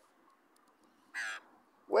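A young Australian magpie gives one short call about a second in.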